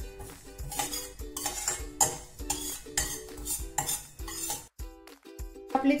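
A stirring utensil scraping and clinking against a stainless steel pan as sesame seeds are dry-roasted, in strokes about twice a second with a short pause near the end.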